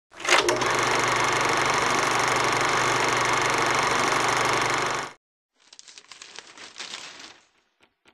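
Logo intro sound effect: a sharp onset, then a loud, steady noise with a low hum under it that cuts off suddenly about five seconds in, followed by softer, irregular crackling clicks.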